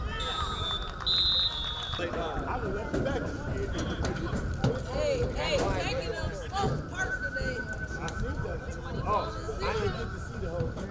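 Referee's whistle blown twice, a short blast and then a longer one, ending the play after a tackle. Players and spectators call out around it.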